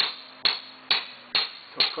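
Mallet striking a caulking iron to drive oakum into the seams of a wooden boat's plank hull: a steady run of sharp knocks, five blows at a little over two a second.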